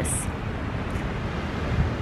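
Wind buffeting the camera microphone: an uneven, rumbling rush with a steady hiss above it.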